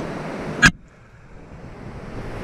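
Steady rush of river water with wind on the microphone, cut by one sharp click about two-thirds of a second in, after which the background noise drops suddenly and stays much quieter.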